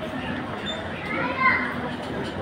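Indistinct background voices of people talking, with one higher voice rising and loudest about a second and a half in.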